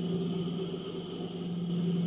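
Steady low hum of an industrial sewing machine's motor running idle, with light rustling of fabric being handled.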